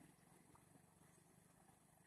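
Near silence: faint background with a low, rapidly fluttering hum.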